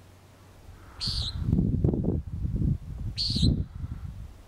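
Common nighthawk giving two nasal, buzzy peent calls about two seconds apart, over a low rumble that runs between and under them.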